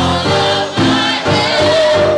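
A gospel choir singing with instrumental accompaniment, chords changing in a steady pulse; a long held sung note comes in about a second and a half in.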